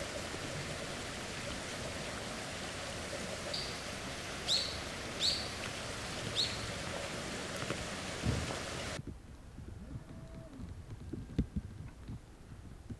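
Steady outdoor hiss with a bird chirping four times in the middle, the chirps short and high. About nine seconds in it cuts to quieter indoor room tone with a few soft knocks.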